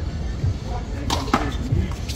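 Two sharp smacks of a big blue rubber handball in play, about a quarter second apart, a little over a second in.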